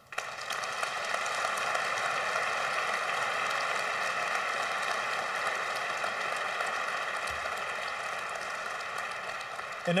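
Audience applauding, starting suddenly and easing a little near the end.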